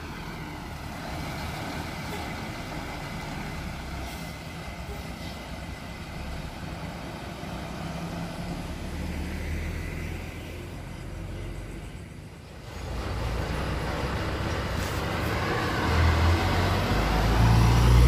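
Diesel engines of large intercity coaches running. The rumble dips about twelve seconds in, then grows louder near the end as another coach approaches.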